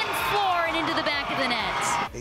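Live game audio: a play-by-play commentator's voice over crowd noise at the stadium as a goal goes in.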